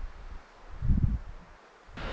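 Wind buffeting the microphone in low, irregular gusts, one strong gust just before a second in, then dying down.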